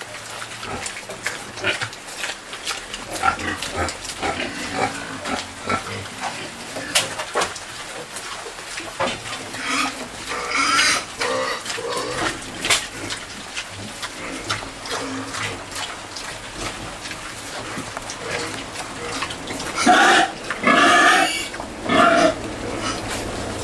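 Domestic pigs snuffling and chewing as they feed on cassava peelings, with many short wet clicks and smacks. Two louder pig calls stand out, one about halfway through and one near the end.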